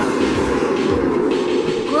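Television soundtrack giving out a loud, steady rattling rumble, a noise that draws the reaction "what the hell is that noise?"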